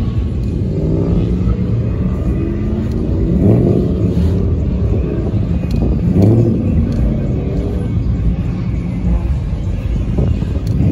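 Car engines rumbling at low revs, with the revs rising briefly about three and a half seconds in and again about six seconds in, as cars pull away.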